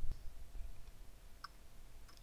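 Quiet pause with a low steady hum and one faint computer-mouse click about one and a half seconds in, advancing the presentation slide.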